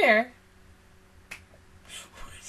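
A woman's short voiced sound sliding down in pitch, then a single sharp click about a second and a half in.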